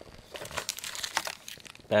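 Clear plastic clamshell packaging crinkling and crackling as a hand pulls it from its cardboard insert, as a quick run of small crackles.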